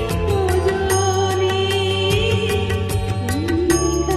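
A woman singing a Bengali song over a karaoke backing track with a steady beat. She holds long notes with a slight wobble and slides up to a new note near the end.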